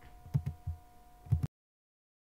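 Four soft low thumps over a faint steady electrical hum, then the sound cuts off abruptly to dead silence about one and a half seconds in.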